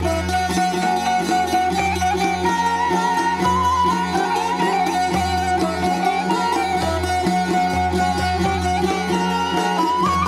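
Bulgarian tamburas (long-necked plucked lutes) playing a Pirin folk tune over a steady low drone, starting abruptly.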